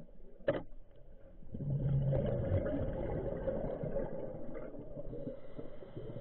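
Scuba diver's regulator exhaust underwater: a sharp click about half a second in, then a long rumbling stream of exhaled bubbles from about a second and a half in, fading slowly over several seconds.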